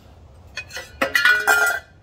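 Start capacitor being pulled out of its plastic holder on an air compressor motor. A sharp click about a second in is followed by a loud scraping, clinking rattle with ringing tones that lasts most of a second.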